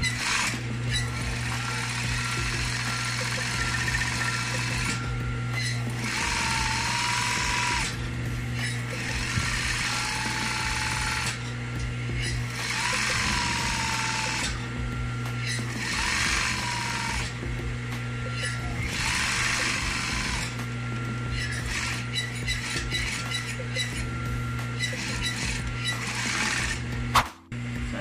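Industrial single-needle sewing machine stitching a seam in cotton curtain fabric in runs of a few seconds, stopping briefly and starting again, over a steady motor hum that carries on between runs. Near the end it breaks off with a sharp click and a moment of quiet.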